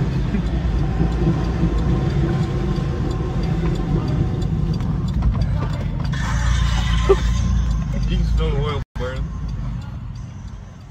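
Steady low rumble of a moving car heard from inside its cabin, engine and road noise, with a rougher, hissier stretch about six seconds in.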